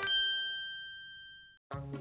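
A single bright chime closing the animated logo jingle, struck once and ringing out as it fades away over about a second and a half.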